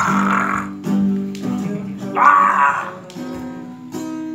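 Acoustic guitar strummed in a steady rhythm, its chords ringing between strokes. Two loud, harsh bursts, each under a second and about two seconds apart, cut over the strumming and are the loudest sounds.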